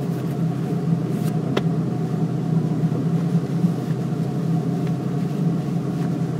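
Car engine idling steadily, heard from inside the cabin as a low, even hum.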